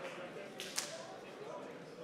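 Low murmur of a large seated audience in an auditorium, with one sharp crack a little under a second in.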